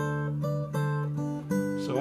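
A recorded music sample made for a microphone comparison, playing back: sustained notes struck in a repeating pattern about three times a second, moving to a new chord about one and a half seconds in.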